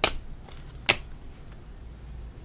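Trading cards being handled and set down onto stacks on a table: two sharp clicks, one at the start and one just under a second later, over a low steady hum.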